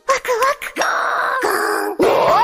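A high-pitched anime character's voice in Japanese: a short exclamation, then a drawn-out, rough cry with slowly falling pitch lasting about a second.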